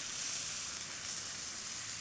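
Food sizzling in a hot frying pan: a steady, even hiss.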